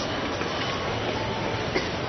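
Steady outdoor city ambience on a busy pedestrian street: a continuous low rumble and hiss with no distinct events.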